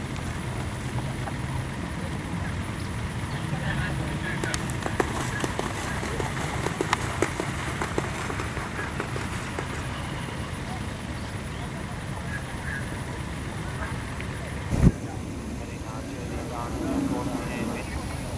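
Outdoor ambience: faint, indistinct voices of people close by over a steady low rumble, with a few small clicks and one sharp thump about fifteen seconds in.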